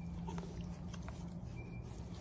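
Faint sounds of a cow close to the microphone as its face is scratched, over a steady low hum.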